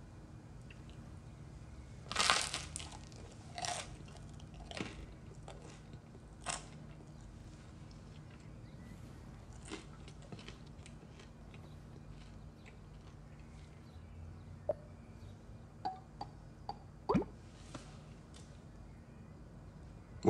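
Biting into and chewing a slice of crisp toast: a loud crunch about two seconds in, then softer crunches spaced a second or two apart. A few small clicks come near the end.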